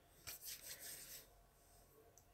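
Faint, soft rubbing of fingertips working a dab of face moisturizer cream, a few light strokes that stop a little past a second in.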